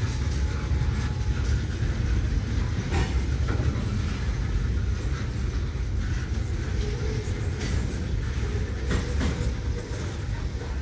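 Freight cars rolling slowly past: boxcars and covered hoppers make a steady low rumble of steel wheels on rail, with a few sharp clicks and knocks.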